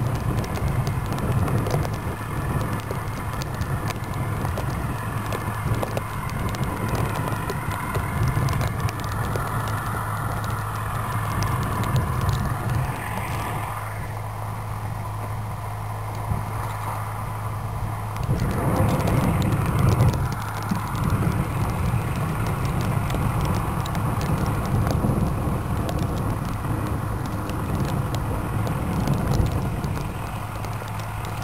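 Footsteps in snow at a walking pace over a steady low hum, louder for a couple of seconds about two-thirds of the way through.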